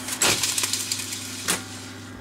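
Grundig TK341 reel-to-reel tape recorder at the end of a fast rewind. A loud mechanical clunk and a short run of clicks come about a quarter second in, with another sharp click about a second later, over a low motor hum. These are the machine's piano-key transport buttons being pressed by hand, since it has no auto stop.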